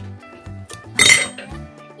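A small metal jingle bell drops onto a hard tabletop about a second in, with one sharp clink and a short ringing jingle. The incense stick has burnt through the thread holding it, so the incense clock is striking the hour.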